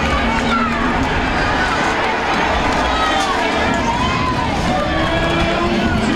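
Stadium crowd close by: many fans shouting and cheering at once over a dense, steady din of voices.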